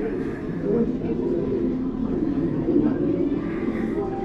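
Spanish-language film soundtrack playing from a large gallery screen: a voice speaking or singing, continuous and wavering, heard with the echo of the exhibit room.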